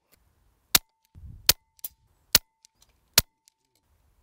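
Daystate Red Wolf PCP air rifle firing: four short, sharp cracks in quick succession, a little under a second apart.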